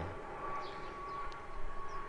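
Low background noise with a faint, steady high-pitched whine that holds one pitch throughout.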